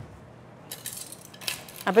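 Ice cubes clinking and rattling as metal tongs dig into a stainless steel ice bucket, a quick run of clicks beginning a little under a second in.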